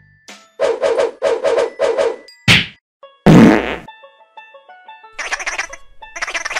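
Cartoon sound effects: a rapid stuttering buzz of about seven quick pulses, then a quick whoosh and a loud, heavy whack. A few short plucked musical notes follow, then a fast chattering run near the end.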